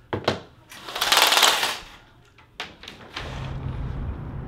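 Clicks, then a rattling clatter about a second long, as venetian window blinds are handled and pulled aside, with a couple more clicks after. Near the end a steady low outdoor hum of traffic comes in.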